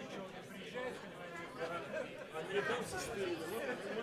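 Chatter of a crowd of people in many overlapping, indistinct conversations in a conference room.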